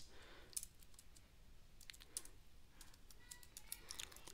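Faint computer keyboard typing: a few sparse, irregular keystrokes.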